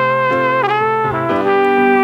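Flugelhorn playing a slow melody of long held notes, with a downward slide about half a second in, played back on its own over piano from the song's multitrack recording.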